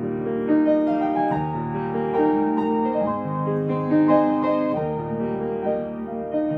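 A Baldwin grand piano played solo: a melody over held chords, with new notes struck about every half second.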